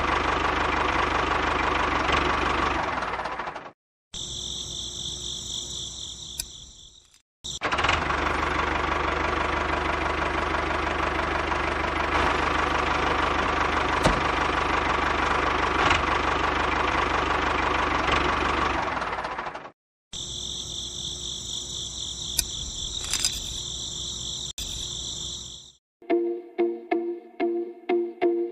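Miniature toy tractor's small motor running with a dense, rattling chug as it drives along, towing a water-tanker trailer. It is heard in two long stretches broken by abrupt cuts, with a high, shrill buzz filling the gaps between them.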